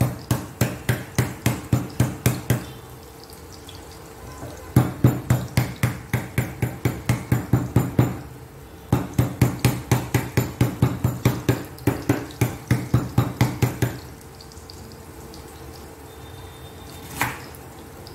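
A kitchen knife striking lemongrass stalks on a wooden cutting board: three runs of quick, even knocks, about four a second, then two single chops near the end. A faint steady sizzle of meatballs frying in a pan runs underneath.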